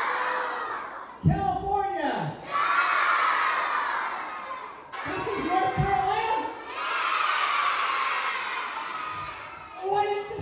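A crowd of elementary schoolchildren at a school assembly shouting and cheering in three loud waves, each a few seconds long, with a voice calling out in the gaps between them.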